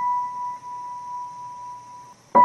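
A single high piano note from the background music rings on and slowly fades.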